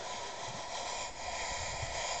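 Steady hiss of steam venting from a dry mud volcano.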